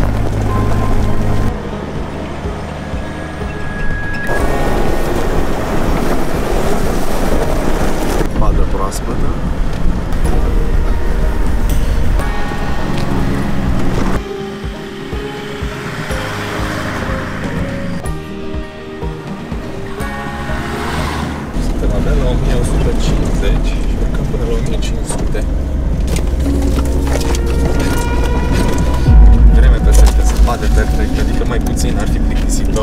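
Background music, with a vehicle engine running underneath. Shifts in level suggest the picture cuts between driving shots.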